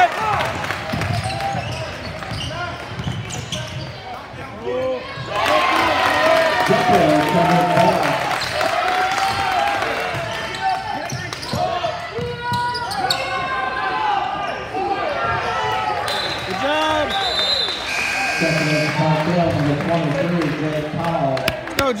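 A basketball being dribbled and bounced on a hardwood gym court, with overlapping shouts and talk from players, bench and spectators echoing in the hall.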